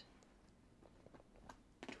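A few faint clicks of wooden lace bobbins knocking together as pairs are twisted and crossed to work a plait, over near silence.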